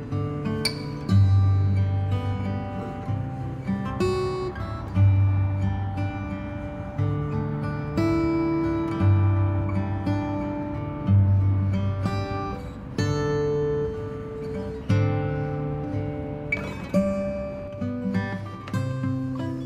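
Background music: an acoustic guitar piece, plucked and strummed, with low bass notes struck every second or two.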